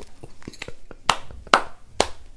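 Hands clapping: a few faint taps, then two sharp claps about a second in, half a second apart.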